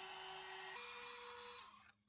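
Small electric heat gun running: a steady rush of air over its fan motor's hum, the hum stepping up in pitch about a third of the way in, then switched off near the end. It is blowing hot air to melt leather wax into an old leather knife sheath.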